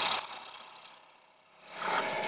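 Drill press running, its bit drilling out the tapped threads in a birch plywood block. A thin, steady high whine sits over the cutting noise and fades out about three-quarters of the way through.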